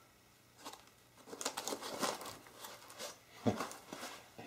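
A heavy stepper motor being set down into its styrofoam packing insert: irregular scraping and rustling of foam against the motor's metal body, starting about a second in.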